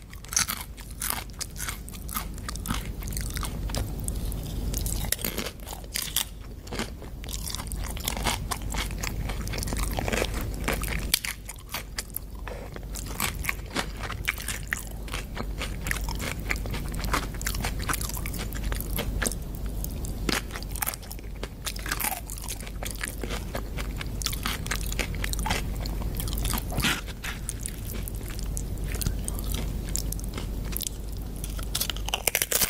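A person chewing and biting crunchy food close to the microphone, a continuous run of sharp crunches.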